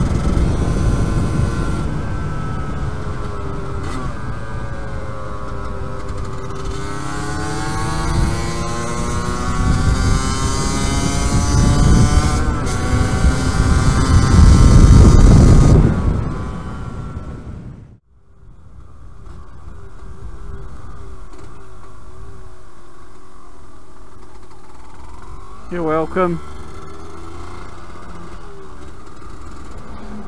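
Two-stroke single-cylinder engine of a Yamaha DT125 LC YPVS under way, with heavy wind rush on the helmet microphone, rising in pitch as it accelerates hard. It fades out about two-thirds of the way through and comes back as a quieter, steadier running sound at low speed.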